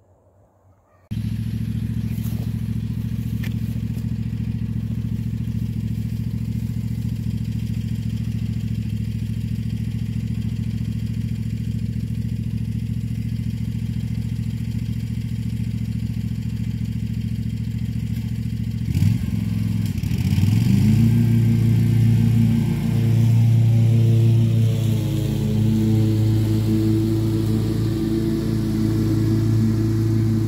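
Ride-on mower engine running steadily, starting after a second of near silence. About two-thirds of the way in its pitch sweeps, and it then runs louder at a different engine speed.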